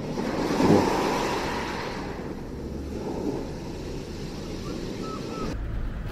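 Sea surf washing on a shore, a steady rushing noise that cuts off suddenly near the end.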